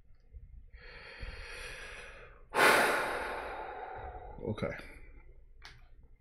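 A man draws a breath and lets out a long, heavy sigh that starts suddenly and fades away. A short low voiced grunt follows, then a faint click.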